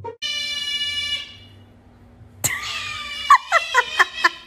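A bright, steady tone lasts about a second and fades. About halfway through, after a click, an animal gives a high, wavering cry in short notes that slide up and down.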